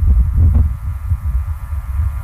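A deep, throbbing hum fills a pause between spoken phrases.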